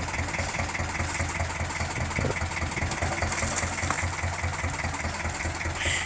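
Fishing boat's engine idling steadily, a low, even throb under the hiss of wind and sea.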